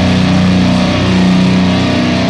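Live metalcore band holding low, sustained notes on distorted guitars and bass, without drum hits, at full concert volume.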